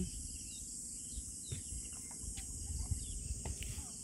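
Steady, high-pitched chorus of insects such as crickets, over a patchy low rumble.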